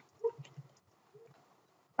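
Faint computer keyboard typing, a few soft key clicks, with a brief drawn-out spoken "all" near the start.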